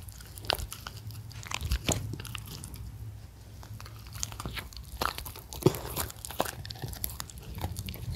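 Shetland sheepdogs biting and chewing pieces of pan-fried jeon held out to them by hand, as irregular crunchy bites and teeth clicks over a low steady hum.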